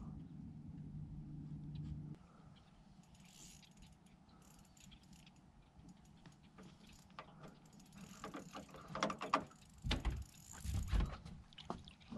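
Spinning fishing reel being cranked, its gears clicking in an irregular run over the last few seconds as a panfish is reeled in, with a couple of low thumps. Before that, a low steady hum cuts off about two seconds in.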